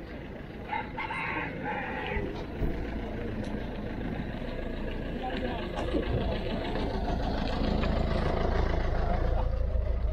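A rooster crowing once, about a second in, over the murmur of voices of a market crowd; a low engine rumble builds and grows louder toward the end.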